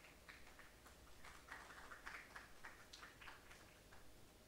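Faint, scattered handclaps, a few irregular claps a second, thickest in the middle, over near silence.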